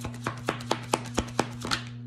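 A deck of tarot cards being shuffled by hand to draw a clarifier card: a quick, irregular run of sharp card clicks and slaps that stops just before the end.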